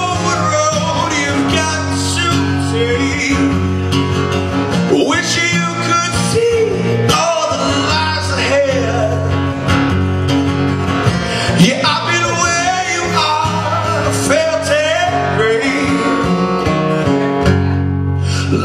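Live acoustic rock performance: an acoustic guitar strummed as accompaniment while a male vocalist sings into a microphone.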